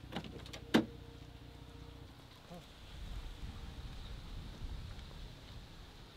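Jeep Gladiator pickup tailgate latch released by its handle: one sharp click under a second in, with a few lighter clicks just before it, followed by a low, steady rumble.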